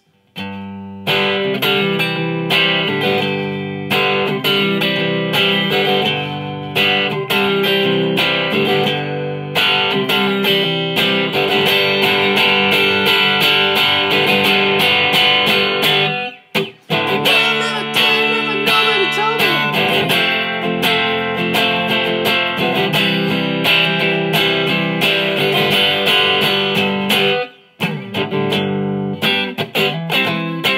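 Fender Stratocaster electric guitar playing a rock riff and chords, starting about a second in and breaking off briefly twice, once near the middle and once near the end.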